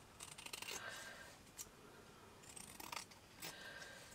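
Scissors snipping through a printed paper picture, several faint cuts as its corners are rounded off.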